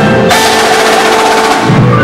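Marching percussion ensemble playing loudly: front-ensemble mallet keyboards (marimbas and vibraphones) with cymbals and drums. A sharp hit about a third of a second in is followed by held ringing notes, and deeper hits build up near the end.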